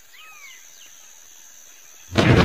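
Outdoor nature ambience with birds calling: several short, quick, falling chirps and one longer arching call near the start, over a faint steady high-pitched tone.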